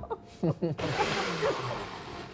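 Personal bullet-style blender motor running with a steady whir, starting about a second in, as it purees tofu until smooth. Laughter and talk sit over it.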